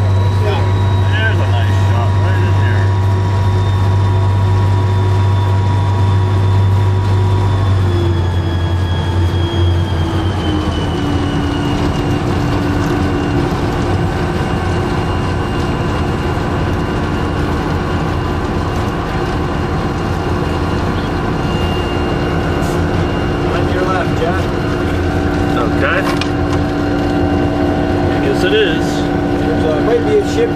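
EMD SD40-2 diesel locomotive's 16-cylinder two-stroke engine running as the train moves, with wind and rail noise. About eight to ten seconds in, the engine note falls and settles at a lower, steady pitch.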